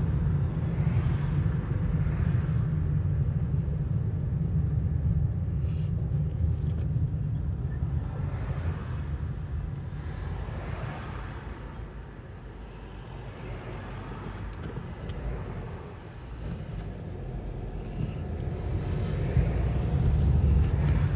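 Car driving, heard from inside the cabin: a steady low rumble of engine and road noise that grows quieter through the middle and builds again near the end.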